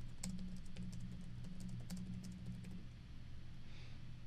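Typing on an iPad's on-screen keyboard: a string of light, irregular taps, over a faint steady low hum.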